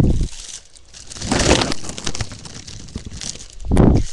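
A deflated foil helium balloon crinkling as it is handled, with a long rushing inhale of about a second as the helium is sucked out of it through the hole. Dull thumps on the microphone at the start and again just before the end.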